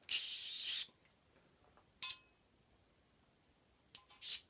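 Small high-voltage arc hissing between a Slayer exciter coil's metal top load and a hand-held welding rod. It gives one burst of just under a second, then a short one about two seconds in and a very brief one near the end.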